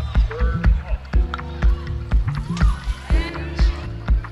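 Minimal techno DJ mix playing: a steady four-on-the-floor kick drum about twice a second, with snippets of a voice over it.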